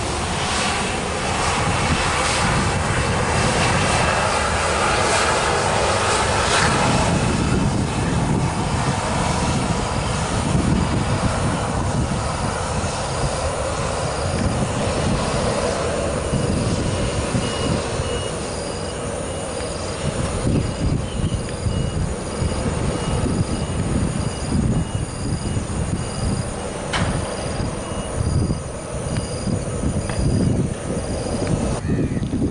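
Malaysia Airlines Boeing 737-800's CFM56-7B jet engines running as the airliner taxis past. A whine rises in pitch over the first several seconds, then the engine noise eases off in the second half, with wind buffeting the microphone.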